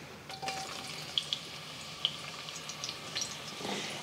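Thinly sliced shallots sizzling in hot corn oil in a cast iron Dutch oven: a steady hiss with scattered small pops, and a light clink near the start.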